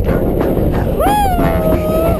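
A long, held, howl-like vocal cry starts about a second in: it rises, then holds with a slight fall. It sounds over steady wind rush on the microphone and a faint music bed.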